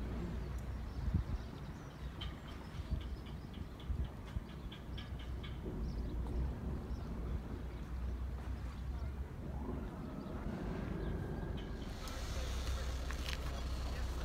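Outdoor seaside ambience with a steady low rumble of wind on the microphone. There is a run of light, evenly spaced clicks a couple of seconds in, and a tone that rises in pitch about two thirds of the way through.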